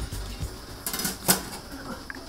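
Metal lid of a stainless steel steamer pot being set on the pot, with two sharp metal-on-metal clinks a little over a second in.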